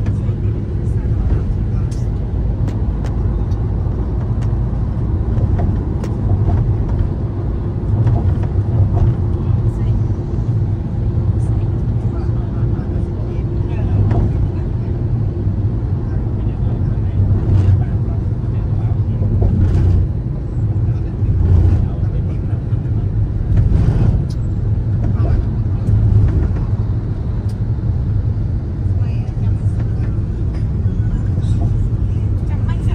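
Steady low rumble of a car moving along a road, heard from inside the vehicle: engine and tyre noise with faint ticks here and there.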